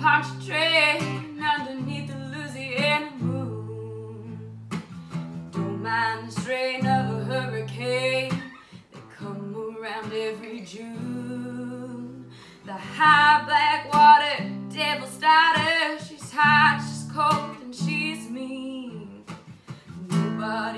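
Acoustic guitar strumming chords with a woman singing over it. The voice comes and goes between phrases and is loudest in the last third.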